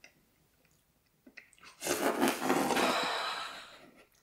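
A person tasting hot coffee from a mug: a few faint clicks, then a long breathy sip-and-exhale starting about two seconds in and fading out over about two seconds.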